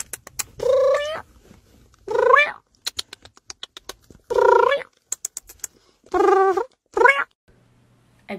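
Meowing: four drawn-out calls of about half a second each, rising in pitch, spaced a second or two apart, with quick runs of short clicks between them.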